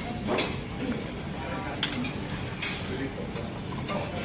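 A few scattered light metallic clinks and knocks from a robotic omelette-cooking station as its arm works over the steel griddle and trays, over a background of indistinct voices.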